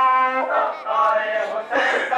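A single voice chanting a mourning lament (noha) in long, held, wavering notes, breaking off about half a second in and resuming in shorter phrases.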